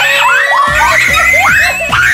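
An edited-in cartoon-style sound effect: quick whistle-like tones gliding up and down several times a second, with a fast run of falling low pulses underneath from about half a second in.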